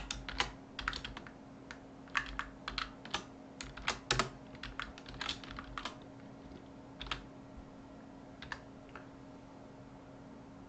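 Typing on a computer keyboard: a quick run of key presses for about the first six seconds, then a few single clicks, over a faint steady hum.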